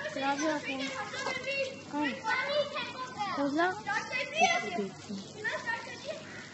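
Children's voices shouting and calling out to each other at play, several at once.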